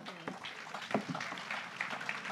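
Light, scattered audience applause, with a few faint voices in the background.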